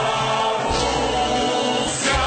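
Cossack folk ensemble choir singing in chorus over instrumental accompaniment.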